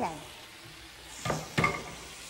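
Thinly sliced lamb sizzling in a hot nonstick frying pan over a gas burner, a steady frying hiss. Two short sharp clicks come about a second and a half in.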